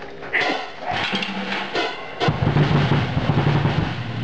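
Drum kit played fast: a rapid run of drum strokes that grows louder and heavier about two seconds in.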